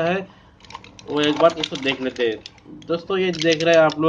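A man speaking, with light clicks and rustling from a cardboard medicine box and a foil blister strip being handled, heard most plainly in a short pause about half a second in.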